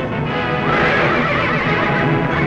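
Orchestral film score with a dense, loud wash of battle noise rising under it from about half a second in.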